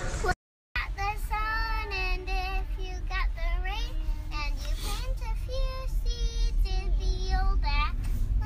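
A child singing a tune in long held notes that slide up and down, over the steady low rumble of a moving car's cabin. The sound cuts out completely for a moment just under a second in.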